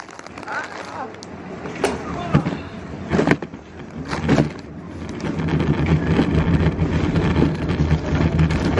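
A car engine running, a steady low hum that sets in about halfway through, after a few short knocks and handling noises.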